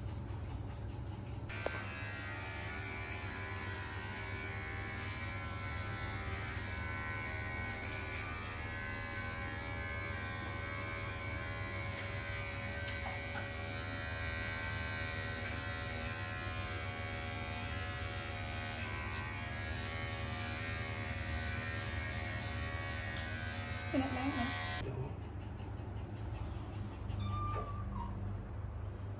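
Cordless electric pet hair clipper running steadily as it shaves the fur off a cat's belly to prepare the skin for a spay. It switches on about a second and a half in and cuts off near the end.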